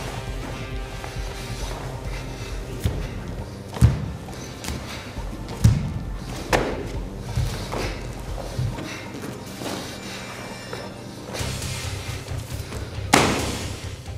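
Background music with a handful of sharp slaps and thuds from a barefoot Kenpo karate blocking set performed at speed, the loudest near the end.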